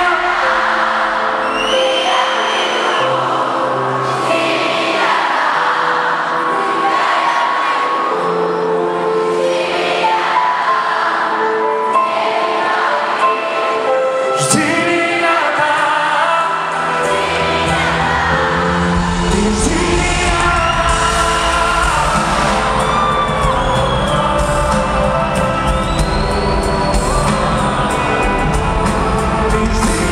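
Live pop music with singing, the arena audience singing along. A heavy bass beat comes in a little past halfway.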